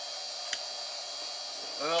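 Steady electrical hum and hiss with a high, steady whine from a running server switching power supply, with one faint click about half a second in.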